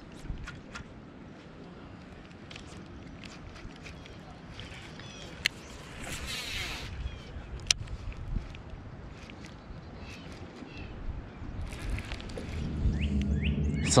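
Outdoor wind-and-water background with scattered small clicks and taps from a baitcasting rod and reel being handled, two of them sharper about five and a half and seven and a half seconds in, and a few faint bird chirps.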